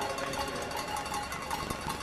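Music playing in an ice hockey arena during a stoppage in play, over crowd noise with many short sharp clicks.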